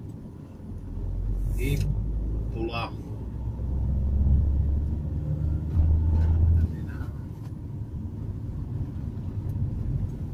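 Car engine and road rumble heard from inside the cabin, swelling after the first second and then easing to a lower steady level about two-thirds of the way through as the car lifts off the throttle.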